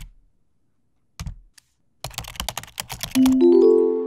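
Logo sting: keyboard typing clicks, a few at the start, one about a second in and a fast run from about two seconds, as the word is typed out. Near the end comes a short upward run of held musical notes that ring on.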